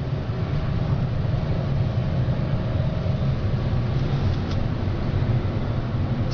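Otis gearless traction elevator car travelling down its shaft at high speed, about 700 to 800 feet a minute: a steady low rumble, with a faint steady hum that fades out about halfway through.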